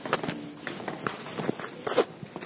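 Footsteps of a person walking, about two steps a second, with a louder knock near the end.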